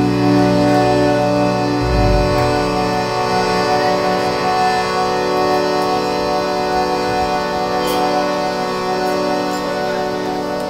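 Live rock band letting a long held chord ring out: a steady organ-like drone with sustained guitar notes and no singing. The bass and lowest notes drop away about two seconds in, leaving the higher held tones.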